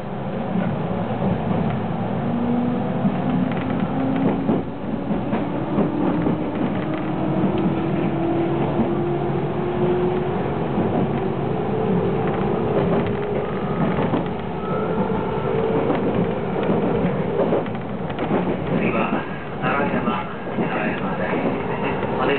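JR West 221 series electric train pulling away and gathering speed, heard from inside the car: the motor whine climbs steadily in pitch as the train accelerates. Near the end the wheels start clicking over rail joints.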